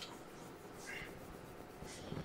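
Chalk on a blackboard: a few faint, short scratching strokes as a vector is drawn.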